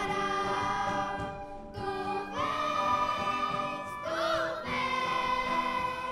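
Children's choir singing long held notes in phrases, with short breaks between phrases about two and four seconds in.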